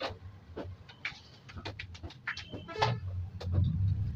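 Light clicks and knocks of dough and kitchen utensils being handled at the counter, over a low hum that grows louder toward the end. A short horn-like toot sounds near three seconds in.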